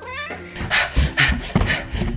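A cat's brief meow at the very start, then a run of low thumps and rustling as the camera is carried along.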